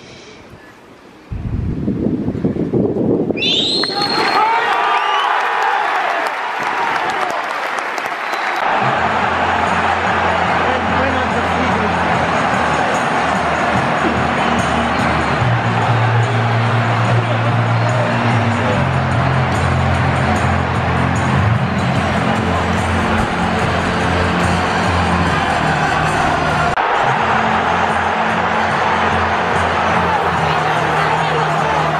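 Football stadium crowd breaking into applause and cheering, with a high whistle rising a couple of seconds later; from about nine seconds, music with a stepping bass line is laid over the crowd noise.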